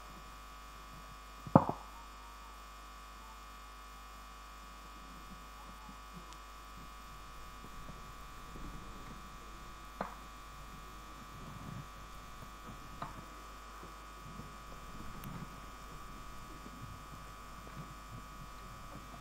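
Steady electrical hum on the microphone and sound-system feed, with a sharp click about a second and a half in and two softer clicks later. Faint low murmur of a distant crowd shows under it in the second half.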